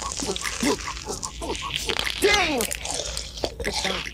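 Close-up crunching and biting of sugar-coated candy: a run of short crisp crunches. A brief voice sound with falling pitch comes a little past halfway.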